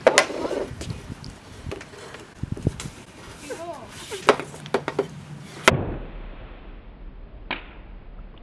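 Sharp clacks of a hockey stick and puck striking on a plastic shooting pad, several over a few seconds, the loudest at the very start and again near six seconds in.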